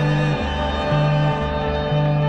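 Psychedelic rock recording from 1967 in an instrumental passage without vocals, with sustained organ and guitar over a bass line that changes note about twice a second.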